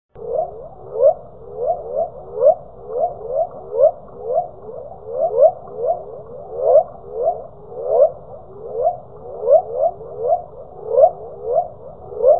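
A quick run of short rising chirping calls, two or three a second and irregularly spaced, over a low steady hiss; it starts suddenly.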